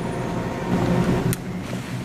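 Steady low hum and hiss of room ventilation, with a single faint high tick a little past the middle.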